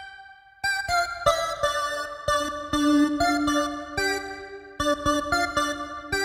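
Yamaha Reface YC organ played with its YC voice, modelled on Yamaha's vintage YC organ. A brief fading tail gives way about half a second in to a run of sustained chords that change every half second or so, each starting with a crisp click.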